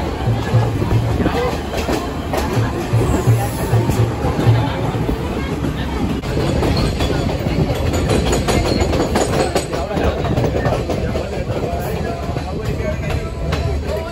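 Passenger train running, heard from beside an open carriage window: a steady rumble of wheels on the rails, with clicks over rail joints that come more often in the second half.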